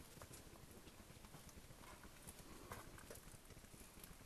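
Faint footsteps, a few soft, irregularly spaced steps, over near silence.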